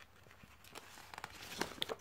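Soft rustling of a paper instruction sheet being handled and unfolded, with a few light ticks of paper and plastic, growing a little towards the end.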